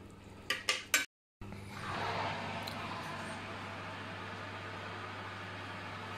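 A metal ladle clinks a few times against a glass baking dish while basting a roast turkey, then a steady hiss.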